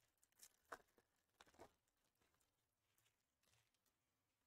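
Near silence, with a few faint crinkles from a foil trading-card pack wrapper and cards being handled, mostly in the first two seconds.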